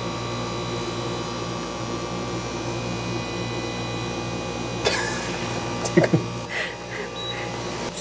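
A steady electrical machine hum, from an appliance running, with a couple of short knocks about five and six seconds in.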